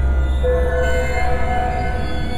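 Dark ambient horror music: a deep low drone with held, squealing high tones layered over it, a new tone entering about half a second in and a higher one taking over partway through as the bass drone drops away.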